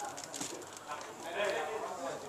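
Quiet room sound with a faint, indistinct voice and a few light clicks, no clear words.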